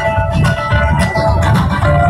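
Live band music, led by guitar over a pulsing bass line, in an instrumental stretch without singing.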